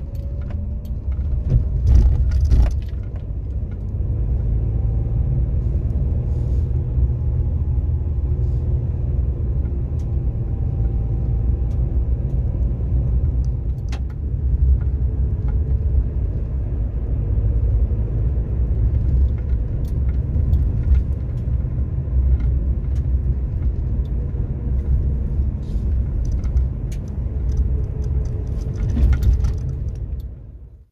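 Engine and road noise inside a moving car's cabin: a steady low rumble, with scattered light clicks and rattles.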